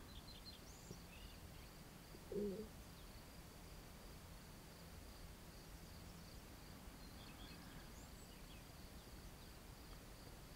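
Near silence with a faint steady, slightly pulsing high chirring like a cricket, and a few faint bird chirps. A short soft low sound comes about two and a half seconds in.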